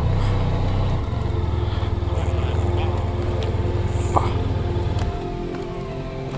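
Motorcycle engine running at low speed under background music; the engine rumble drops away about five seconds in, leaving the music.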